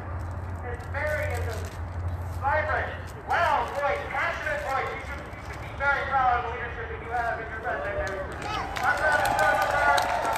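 Indistinct talking that no words can be made out of, with a low steady rumble underneath.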